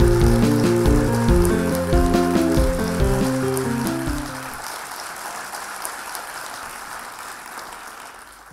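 Opening theme music, a short melodic tune over drums, ends about halfway through. A crackling hiss, present under the music, fades away gradually after it.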